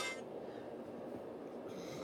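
Faint, steady background hiss of room noise, just after music played from a phone cuts off at the very start.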